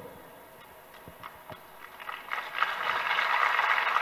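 Audience applause that starts faintly about two seconds in and builds to a steady clapping.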